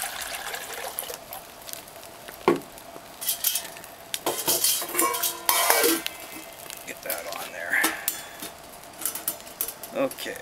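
Water poured from a bottle into a steel camp pot, then metal clinks and knocks as the pot is handled and set onto the steel pot supports of a folding wood-burning stick stove, some with a short ringing tone, over the sizzle of the wood fire.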